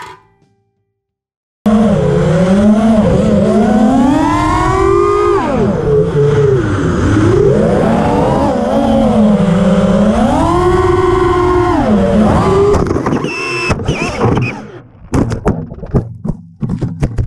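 FPV quadcopter's motors and propellers whining, heard from the onboard camera, the pitch rising and falling with the throttle. Near the end the whine breaks off into a few knocks and rustles as the quad crashes into grass.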